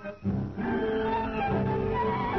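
Instrumental music in which a solo violin takes the melody of a song over accompaniment, in sustained notes. It drops away briefly just after the start, then resumes.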